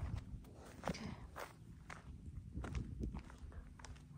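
Footsteps of a person walking over dry grass, dirt and asphalt at the edge of a road, irregular steps with soft low thuds.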